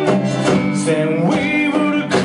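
Live music: slide guitar played flat on the lap, with sliding notes, over a drum struck with sticks in a steady beat.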